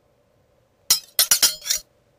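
Intro sound effect of a blade slicing: a quick run of about five sharp, bright metallic clinks with a high ring, all within under a second.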